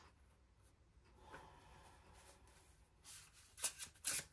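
Tarot cards being handled: the deck rubs softly in the hands, then a few quick card slides near the end as shuffling starts.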